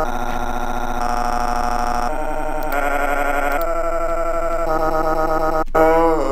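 Horror-film sound design: a dense, dissonant drone of many layered tones, shifting pitch in steps every second or so. A brief break comes near the end, followed by a louder falling wail.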